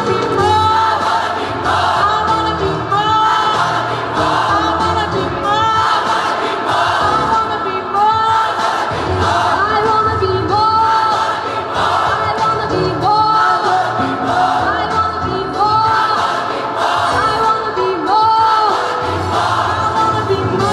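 Gospel choir singing at full voice, a short phrase repeated over and over, with a woman soloist singing into a microphone over the choir, in a large reverberant church.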